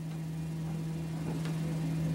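Steady low electrical hum with faint hiss, no speech.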